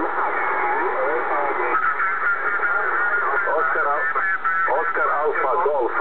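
Single-sideband voice signals on the 10-metre amateur band, heard through a Kenwood TS-690S transceiver's speaker over a steady hiss while its tuning knob is turned. The voices come through thin and unintelligible, shifting in pitch as the receiver is tuned across them.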